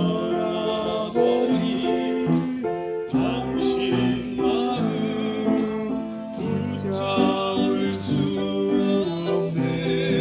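Upright piano played by ear, chords under a melody, with a voice singing along over it.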